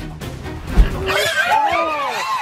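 Background music, cut by a sharp thud just under a second in, then a rapid string of high, rising-and-falling squeals from an animal seized by a crocodile, over splashing water.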